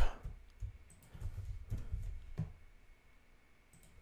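Computer mouse clicking a handful of times at irregular intervals, each click short and sharp.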